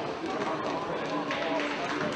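Indistinct shouting and chatter from several voices at once, echoing in an indoor sports hall, with one voice holding a call for about a second mid-way and a few faint knocks from play.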